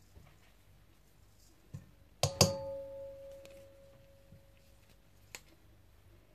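A stainless steel mixing bowl knocked twice in quick succession, then ringing with a clear tone that fades over about two and a half seconds. A few faint light clicks come before and after.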